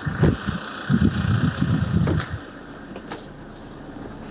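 Ford Transit minibus idling at close range, with irregular low thumps and knocks in the first half and a few sharp clicks later as someone climbs aboard through the side door.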